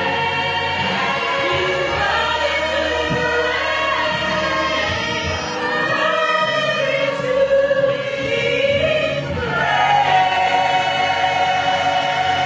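Church choir singing a slow gospel hymn in harmony, the voices holding long notes.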